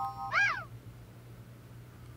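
A single short cat meow, rising then falling in pitch, about half a second in, just after a held electronic tone ends.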